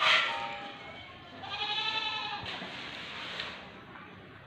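A goat bleating: a short call just after the start, then a longer call of about a second near the middle that rises and falls in pitch.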